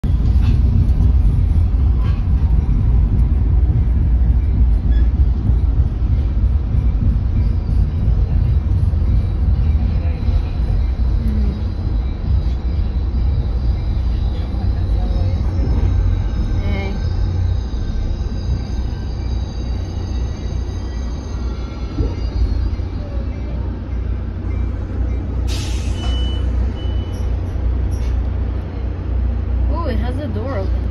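Steady low rumble of a train, heard from behind a window, with a sudden hiss of air about 25 seconds in and two short high beeps just after.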